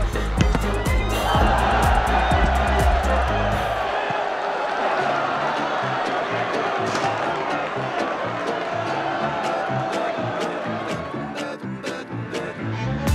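Background music with a heavy bass beat that drops out about four seconds in, over stadium crowd noise.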